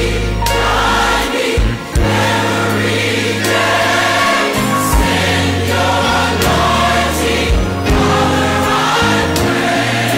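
Gospel choir song with accompaniment: voices singing in harmony over sustained bass notes and regular drum hits.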